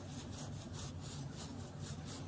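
Cotton pad rubbed quickly back and forth over a metal nail stamping plate, about four strokes a second, wiping off nail polish residue.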